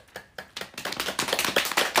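A person clapping hands rapidly. Sparse claps quicken into a fast, steady run about half a second in and get louder.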